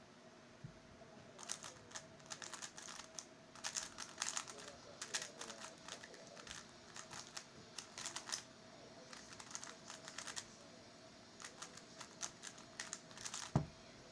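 Rapid plastic clicking of an MF3RS stickerless 3x3 speed cube being turned fast during a timed solve, in quick irregular bursts for about twelve seconds. It ends with one louder thump as the hands come down.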